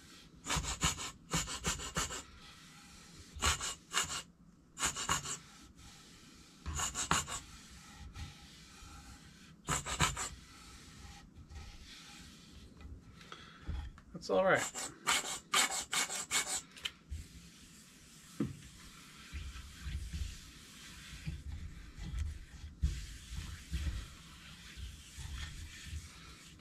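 Plastic squeeze bottle of oil sputtering and spurting in a run of short, hissy bursts as it is squeezed onto an oak board, with a longer cluster of bursts about fifteen seconds in. Between the bursts, hands rub the oil into the wood.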